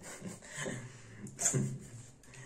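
Rubbing and rustling as a pair of over-ear headphones is handled and lifted off, with a short breathy laugh about one and a half seconds in.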